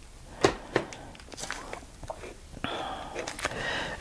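Quiet room with two light clicks in the first second as marker pens are handled, then a faint murmur of voice near the end.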